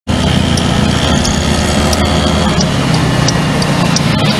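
Scooter engine running and pulling as it speeds up, with wind and road noise, and a regular high tick of the turn signal about every 0.7 s.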